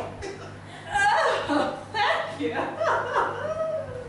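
A performer speaking in a live scene, with some chuckling laughter, over a steady low hum of the hall.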